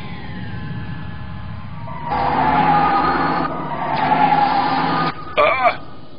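Cartoon battle sound effects: a quieter falling tone, then from about two seconds in a louder sustained siren-like tone over a rumbling noise until about five seconds in, followed by a brief shout.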